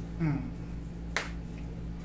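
A single sharp click a little after a second in, over a steady low hum.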